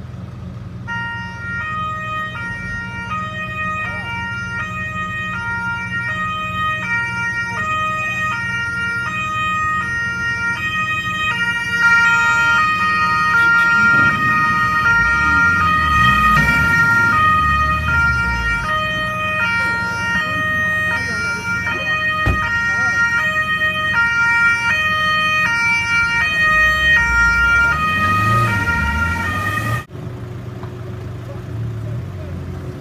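Italian two-tone emergency siren on a Carabinieri car, alternating between a high and a low note about twice a second and getting louder about twelve seconds in. A car engine rumbles underneath at times, most clearly near the end.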